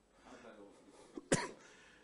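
A single short cough about a second and a half in, over faint, distant-sounding speech.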